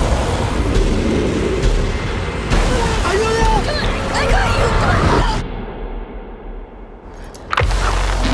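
Film trailer soundtrack: a dense mix of dramatic sound effects and music with shouted voices calling for help. About five and a half seconds in the sound drops to a muffled hush, then cuts back in suddenly and loudly near the end.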